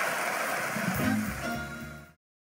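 Audience applause, with music coming in about a second in and the sound tailing off near the end.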